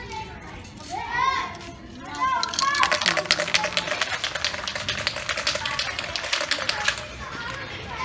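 An F1 aerosol spray-paint can being shaken, its mixing ball rattling in rapid clicks for about four seconds, starting about two and a half seconds in. High-pitched children's voices come before it.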